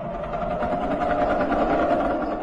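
A steady buzzing drone with a fast flutter, holding one pitch throughout: a sound effect.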